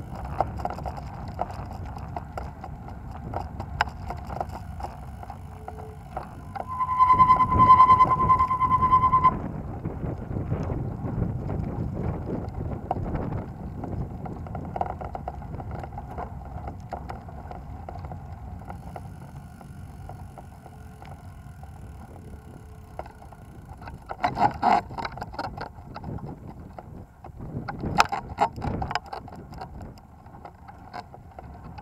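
Tyre rolling noise and wind on the microphone from a slow ride over pavement on a pedal bike. About seven seconds in, a steady high beep sounds for about two seconds and stops; a couple of short rough bursts of noise come near the end.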